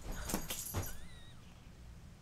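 A cat wand toy rattling and swishing as a cat pounces and bats at it on a bed, a few quick rustling strokes with a soft thump in the first second. A brief faint squeak follows a little after a second in, then it goes quieter.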